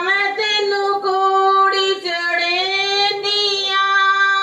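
A woman singing a Punjabi song solo into a microphone, with no instruments, holding long steady notes and pausing briefly between phrases.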